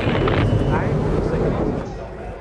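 V8 Supercar engines running on the circuit behind the pit wall: a dense engine rumble with a brief rise in pitch just under a second in, fading near the end as the cars pass.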